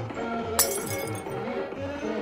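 Music with a steady beat. About half a second in, a single bright glassy chime rings out briefly over it: a sparkle sound effect.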